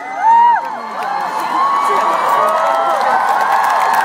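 A large concert crowd cheering, with many voices screaming and whooping at once. It is loudest just after the start, then holds steady.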